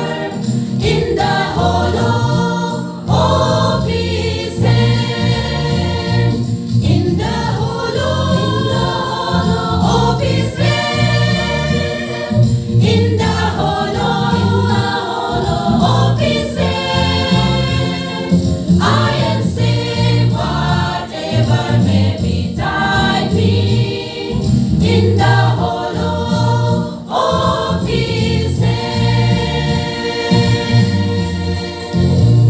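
Women's choir singing a Christian song together, with low bass notes from an accompaniment running underneath.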